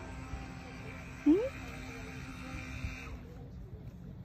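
A steady buzzing hum with several pitches that cuts out about three seconds in, over a low rumble. About a second in, the loudest moment: a toddler's short rising vocal sound.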